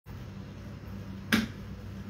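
A single finger snap about a second and a half in, sharp and short, over a steady low room hum.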